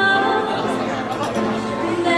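Live band accompaniment playing on, with people chatting over it and little of the sung vocal heard.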